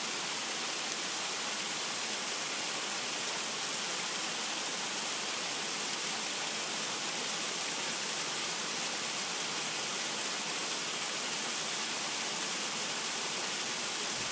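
Steady, even hiss with no separate sounds in it.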